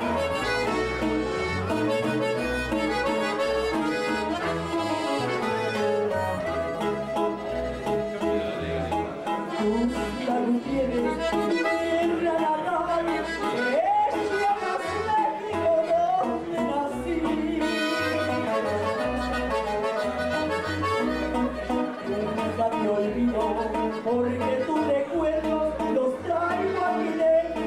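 Live norteño corrido: a button accordion plays the melody over a bass-string accompaniment from a bajo quinto. Partway through, a woman starts singing in Spanish.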